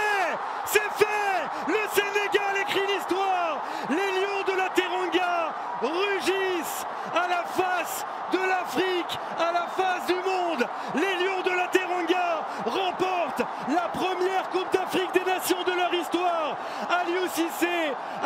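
Excited shouting in celebration of the winning penalty: a voice yelling over and over in short cries that rise and fall in pitch, several a second, with sharp knocks among them.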